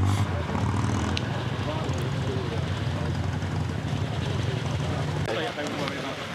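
Vintage cycle car engine running with a steady low hum, which falls away about five seconds in.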